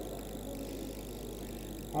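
Steady low hum and hiss of background noise, with no distinct events.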